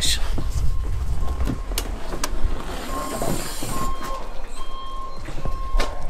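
Austops pop-top roof on a VW T4 camper van being pushed up by hand. There is low rumbling and a few sharp clicks as the roof lifts, then rustling as the canvas sides unfold.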